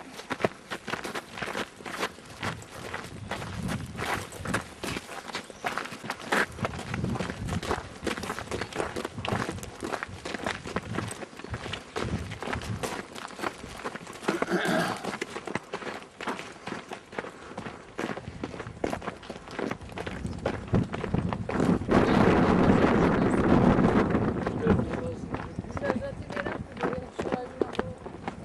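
Footsteps of people walking down a rough mountain path, an uneven run of short crunching steps and knocks. A voice is heard briefly about halfway through, and a louder rustling, noisy stretch lasts a few seconds later on.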